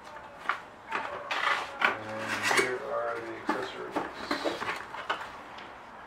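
Paper leaflets and cardboard packaging being handled: rustling with a series of light knocks and taps as items are taken out of a box, the loudest knock a little under two seconds in.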